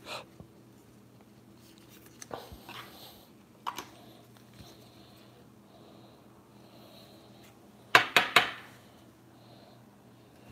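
Trading cards and foil card packs being handled by gloved hands: faint rustles and light taps, then a quick run of three or four sharp clicks about eight seconds in. A steady low hum sits under it.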